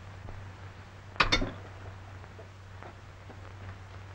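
A short double clink about a second in: a small hard object, glass or metal, is set down or tapped on a desktop. A steady low hum from the old soundtrack runs underneath.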